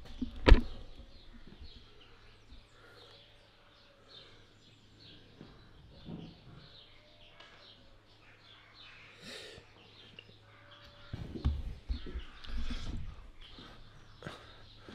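Faint, scattered high chirping calls over low background noise, with a sharp knock about half a second in and a few low bumps near the end.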